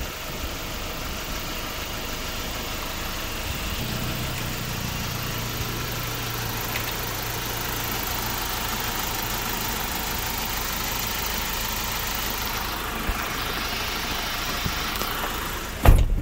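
Kia Bongo III 1.2-ton truck's engine idling steadily under the lifted cab seat, with a low hum that comes in about four seconds in and fades around twelve seconds. A sharp thump comes near the end.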